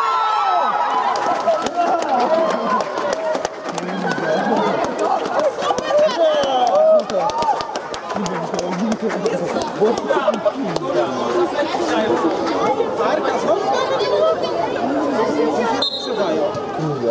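Many overlapping voices of players and onlookers calling out at once in a large hall, with scattered short knocks throughout.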